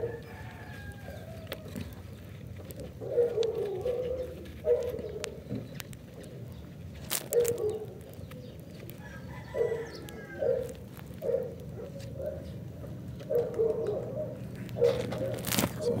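Domestic chickens clucking, short calls coming every second or two, over a steady low hum, with a couple of sharp crackles about seven seconds in and near the end.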